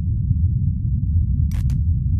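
Outro sound design for a logo card: a steady, low rumbling drone with two sharp clicks about a second and a half in.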